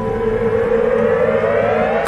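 A synthesized riser in a TV theme tune: one pitched tone that climbs steadily in pitch over about two seconds, building toward the next hit of the music.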